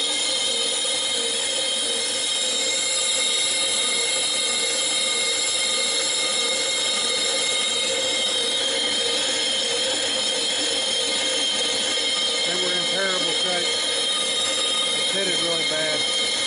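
Lathe running with a flywheel turning on its arbor: a steady mechanical whine made of several high tones that holds level throughout.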